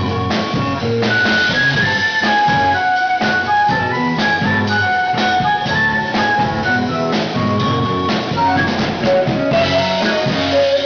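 Live band playing an instrumental passage: a drum kit keeps a steady beat under electric guitar and keyboard, with a lead line of held notes stepping up and down.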